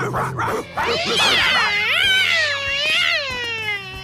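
A cartoon cat character's long yowl, performed by a voice actress: a drawn-out cry starting about a second in that wavers up and down in pitch and slides downward at the end.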